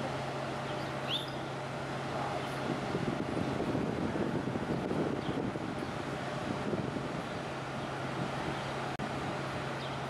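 Steady low hum of a cruise ship's onboard machinery idling in a canal lock, under a rushing wind-like noise that swells in the middle. A few short bird chirps sound over it.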